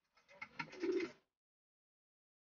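A bird cooing once, short and low, over faint rustling. The sound cuts off abruptly just over a second in.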